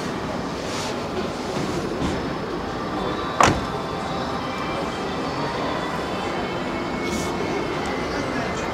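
Steady hubbub of a busy car showroom, indistinct voices and faint background music, with one sharp knock about three and a half seconds in.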